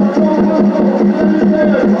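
Peyote song: singing over a fast, steady water-drum beat with a gourd rattle.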